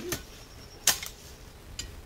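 A garden hoe chopping into weedy soil: one sharp strike just under a second in, with fainter knocks near the start and near the end.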